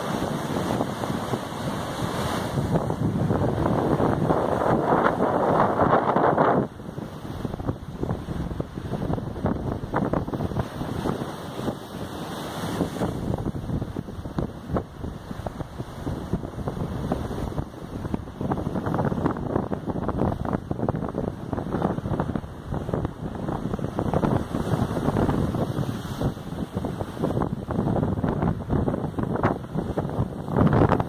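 Waves breaking and washing over a rocky shore, mixed with wind buffeting the phone's microphone. It is loudest for the first six seconds or so, then drops suddenly to a lower, gusting level.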